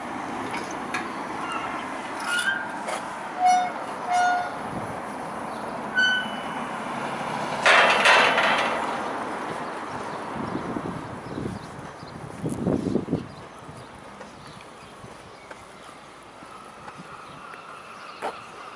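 Outdoor street ambience with a few short, clear bird calls in the first six seconds, a brief rush of noise about eight seconds in, and some lower pulsing sounds a little later.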